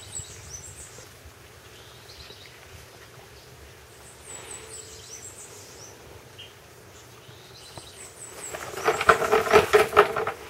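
Quiet outdoor ambience with small birds chirping now and then. Near the end a louder rough, rapidly pulsing rasp lasts about a second and a half.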